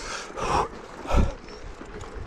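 A man panting hard from the exertion of hand-cranking up a steep climb: two heavy breaths under a second apart.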